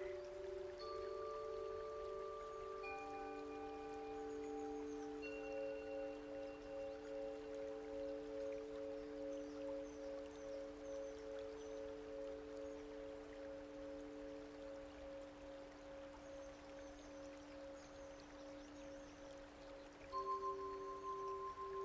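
Quiet, slow background music of held bell-like tones at several pitches, entering one after another and ringing on for many seconds, one of them pulsing gently.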